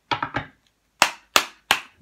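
Fingers snapping in a steady rhythm: two softer clicks at the start, then three sharp snaps about a third of a second apart.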